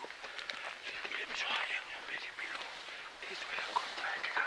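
Hushed, whispered voices, with rustling and scattered footsteps of people pushing through dry scrub.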